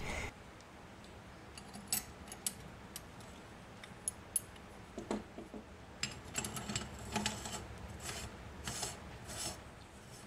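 Faint, scattered metal clinks and scrapes from handling the parts of a Griswold meat grinder as it is assembled: the cutting knife and the perforated grinding plate are fitted onto the front of the barrel.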